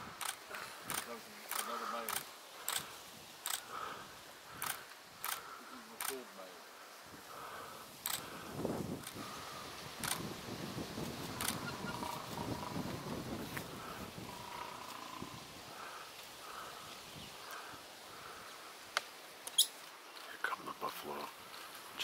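Lions growling over buffalo calves they have pulled down. A rough, low stretch of growling comes about a third of the way in, after a string of sharp clicks in the first seconds.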